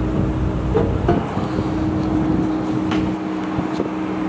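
Steady hum of a running engine with a constant low drone, plus a few light knocks and clicks about a second in and again near the end.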